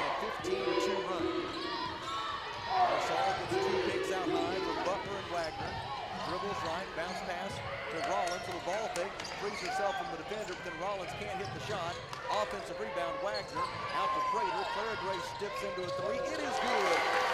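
Basketball game on a hardwood court: the ball bouncing as it is dribbled, and many short squeaks of sneakers on the floor as players cut and stop, over the murmur of a gym with voices.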